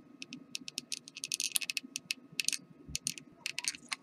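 Light, irregular clicking and ticking, in quick clusters around the middle, as a hot glue gun and a small craft-stick quadcopter frame are handled, with a soft bump near the end.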